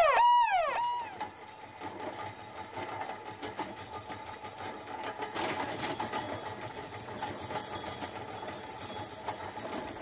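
A repeated rising-and-falling wail that dies away about a second in, then the fast, steady rattle of a hospital stretcher trolley's wheels and frame as it is pushed along a corridor floor.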